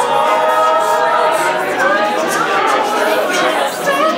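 Male a cappella group singing in close harmony, holding a chord for about the first second, with mixed voices and chatter in the room after that.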